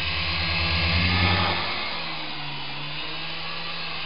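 Syma S107G micro RC helicopter's coaxial rotors and small electric motors whirring close to the microphone, a steady drone that is loudest over the first second and a half and then softer as the helicopter moves off.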